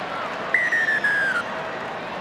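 Stadium crowd noise, with a single whistle blast about half a second in, held just under a second and sagging slightly in pitch.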